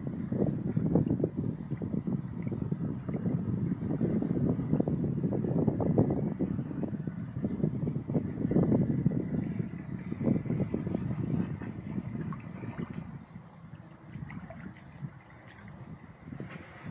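Wind buffeting the microphone in gusts, a low rumbling noise that swells and fades and eases off near the end.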